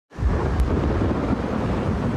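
Deep, steady storm rumble of wind, coming in suddenly at the very start, with a faint high tone held over it.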